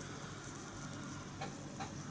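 Quiet room tone in a pause between speech: a faint, steady hiss from a webcam microphone, with two small soft ticks a little after the middle.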